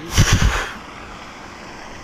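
A short, loud rustling burst from the hauled rope and the gloved arm brushing close to the body-mounted camera as a magnet with a heavy catch is pulled up hand over hand, lasting about half a second. After it comes a steady faint outdoor hiss.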